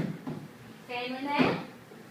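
A person's voice saying a short phrase about a second in, after a sharp knock at the very start.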